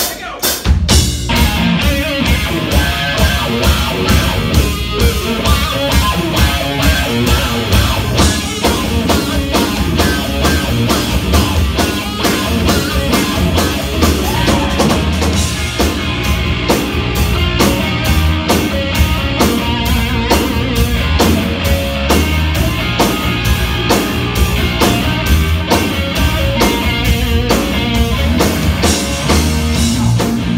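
Live rock band starting a song: electric guitar over electric bass and a drum kit keeping a steady beat, coming in loud about half a second in.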